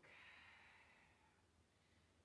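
A faint breath out, a soft hiss that fades away over about a second as the exerciser moves into a plank, then near silence.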